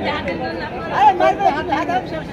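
People talking: chatter among several men.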